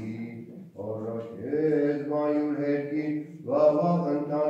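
Armenian Church chant of the morning office: a low male voice chanting in long, held notes. A brief break comes about three-quarters of a second in, and a new phrase starts near the end.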